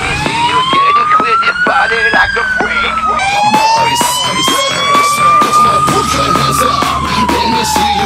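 Fire engine sirens wailing, each pitch slowly rising and falling. About three seconds in the sound cuts to another fire engine's siren, which rises and falls more slowly.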